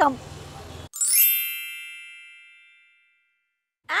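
A single bright chime sound effect, struck once about a second in and ringing out, fading away over about two seconds.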